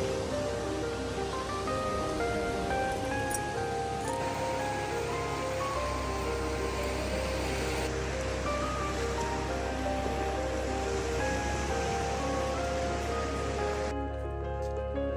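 Background music: a melody of held notes stepping up and down over a low sustained bass, which grows louder about six seconds in, with a steady hiss underneath.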